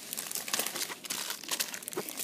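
Clear plastic bags crinkling as hands handle the small toy figures sealed inside them: a dense run of quick, irregular crackles.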